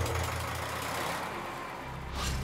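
Stationary engine of a rice-husk gasifier power plant, running steadily on gas from the gasifier to drive the generator: a low, even hum.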